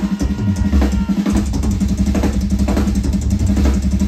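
Live rock drum kit solo: fast, continuous kick drum with snare and cymbal hits.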